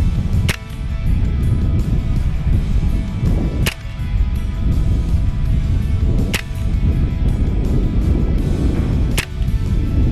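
Four shots from a .25-calibre Hatsan Invader semi-automatic PCP air rifle, each a sharp crack, about three seconds apart. A steady low rumble of wind on the microphone runs under them.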